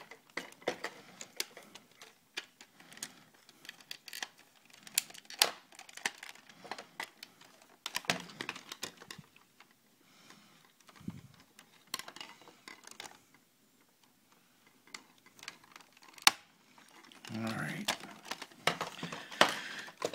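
Plastic parts of a large Ultimate Bumblebee transforming figure clicking and snapping as they are folded and pegged into car mode: irregular sharp clicks, with a quieter stretch a little past the middle.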